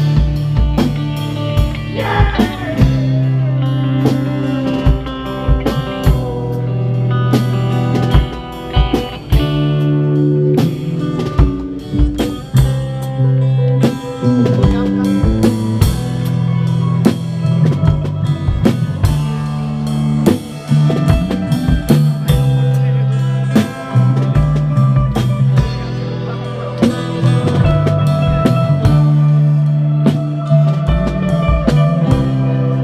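Live rock band playing, with a drum kit and guitars, heard close up from beside the drums so the drum hits stand out over sustained guitar chords.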